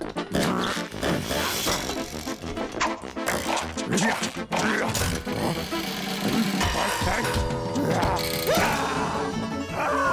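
Lively cartoon background music with comic sound effects: short knocks and quick sliding whistle-like glides, with a rising sweep near the end.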